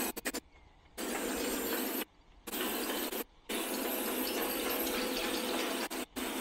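Steady hiss-like noise of running plastic cap production machinery, broken by three brief dropouts to near silence in the first half.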